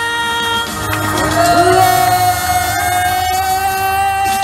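A woman singing into a microphone over backing music, sliding up into one long held note about a second in.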